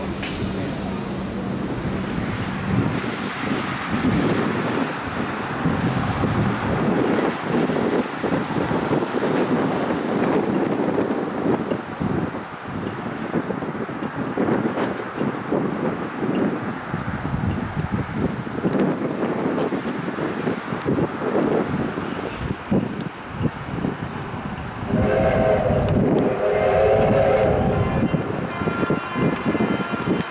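Victorian Railways R-class steam locomotive R707 working under steam, its exhaust giving a continuous, uneven chuffing. About 25 seconds in, a multi-note chime whistle is sounded for about three seconds.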